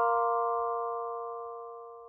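The last chord of a short logo jingle ringing out and fading away steadily.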